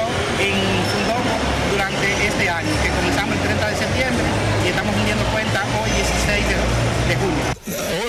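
Speech that cannot be made out, over a dense background of other voices and a steady low rumble. It cuts off abruptly near the end.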